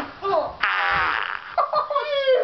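A child making a buzzing, fart-like noise for just under a second, about half a second in, with short bits of children's voices around it.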